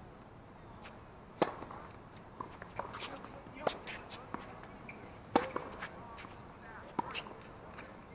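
Tennis rally: rackets striking the ball with sharp pops, four loud ones about two seconds apart, with fainter bounces and hits in between.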